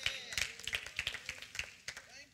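A few people clapping lightly and unevenly, a quick scatter of soft claps, with a faint voice or two behind them.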